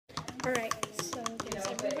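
Quiet talking over a run of many rapid, light clicks and taps from handling things at the counter.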